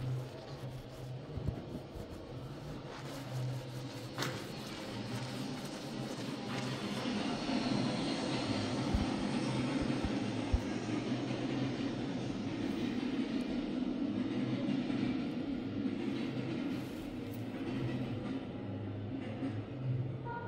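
A steady low mechanical rumble with a hum, growing louder about eight seconds in, with a few knocks from fingers handling the phone in the first seconds.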